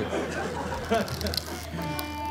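A plastic toy button accordion being handled, with small clicks and a faint laugh, then near the end a steady reedy note sounds from it, one the player says came out on its own without his meaning to play it.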